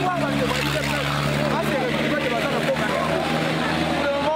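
Outdoor voices and chatter over a steady engine hum from a vehicle running close by; the hum fades out in the last second.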